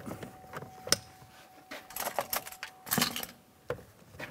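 Irregular plastic clicks and taps as a power-window switch panel is handled and set into a truck's door-panel armrest.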